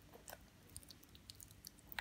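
Faint, scattered little crackles and clicks of popping candy going off in a child's mouth as she eats a popping-candy lollipop, with small mouth and sucking noises.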